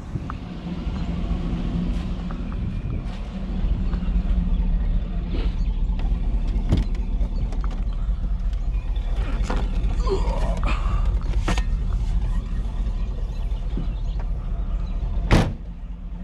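Hummer H2 engine idling steadily, with scattered clicks and knocks and one sharp knock near the end.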